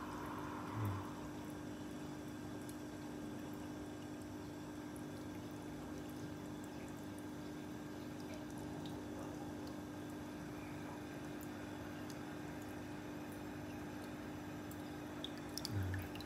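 Running saltwater aquarium: water moving, a steady low hum and scattered faint drips. Near the end there is a short burst of water sound as the surface is disturbed.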